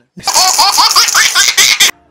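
Loud, hearty laughter in quick repeated bursts, cut off abruptly near the end.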